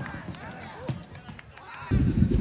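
Distant voices shouting across an outdoor soccer pitch, with a few sharp knocks.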